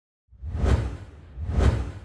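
Two deep whoosh sound effects of a logo intro, each swelling up and fading away, about a second apart.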